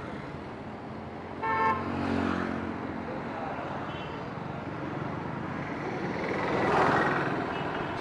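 Street traffic with a vehicle horn giving one short honk about one and a half seconds in and a couple of fainter short beeps later. A vehicle passes close, swelling and fading near the end.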